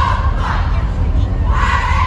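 Cheerleading squad shouting a cheer in unison: a few short shouted words, then a longer held one near the end, over a steady low rumble.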